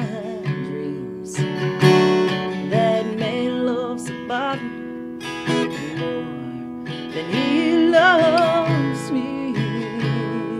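Solo acoustic guitar strummed and picked in a slow blues, with a woman singing with vibrato in two phrases, the second about halfway through.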